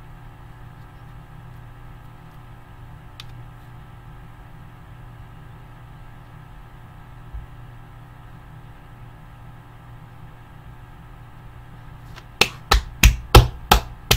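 A low steady hum, then about twelve seconds in a quick run of loud, sharp hand strikes, about three a second, as a person claps or slaps in celebration.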